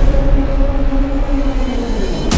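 Cinematic trailer score holding a loud, sustained low drone: two steady held notes over a deep rumble, with no hits.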